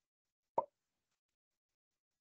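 A single short pop about half a second in, with silence around it.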